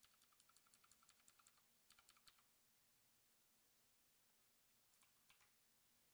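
Faint computer keyboard typing: a quick run of keystrokes for about a second and a half, a short burst just after, and a few more keys near the end.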